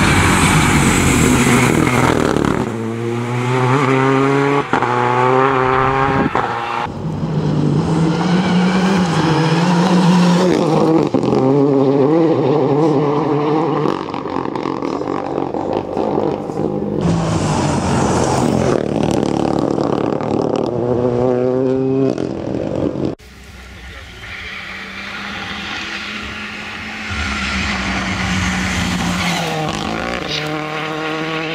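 Renault Clio rally car accelerating hard on a tarmac stage, engine revs climbing in repeated rising sweeps as it changes up through the gears, over several passes. The sound drops away suddenly about two thirds of the way in, then builds again as the car comes back into earshot.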